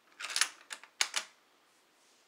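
Mosin-Nagant rifle's steel bolt run forward and turned down to lock: a short metallic clatter followed by several sharp clicks within about a second.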